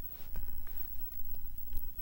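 Domestic tabby cat purring close to the microphone, a low rumble that swells and eases with each breath, with a few faint clicks over it.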